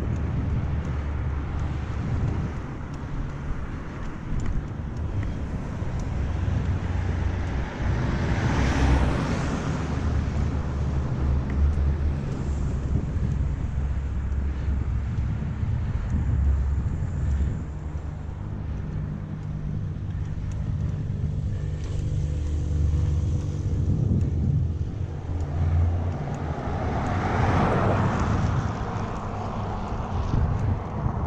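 Wind rumbling on a GoPro's microphone as a mountain bike rolls along a paved road. Two motor vehicles swell and fade as they pass, one about eight seconds in and another near the end.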